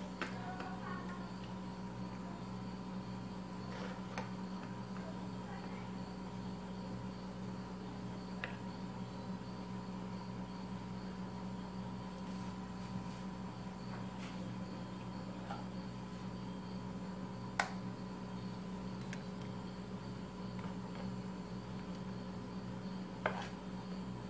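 A steady low hum runs under a few scattered light clicks and taps from biscuits and a spoon being handled in a glass dish. The sharpest click comes about two-thirds of the way through, and another comes near the end.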